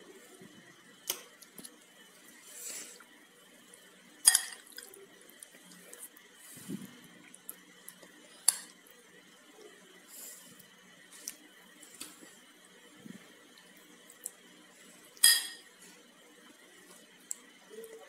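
Metal spoon clinking against a glass plate as topping is spread on bread slices: a few sharp, separate clinks several seconds apart over a faint hiss.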